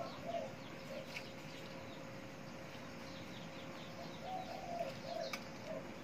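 A dove coos a short phrase of a few notes right at the start, and again about four seconds in, over faint chirping of small birds.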